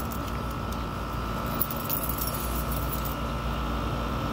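Steady background hum of a small room, a low rumble with a faint steady whine over it, with a few faint light clicks about a second and a half to two and a half seconds in.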